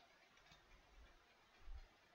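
Near silence: faint room tone, with a soft low bump near the end.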